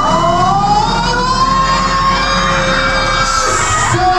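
Several long, siren-like wailing tones glide slowly up and down in pitch and overlap one another over steady background music, building suspense before the bouquet toss.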